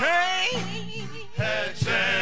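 Live gospel singing: a man's lead voice winding up and down through a quick melismatic run over held low accompaniment, with two short low thumps late on.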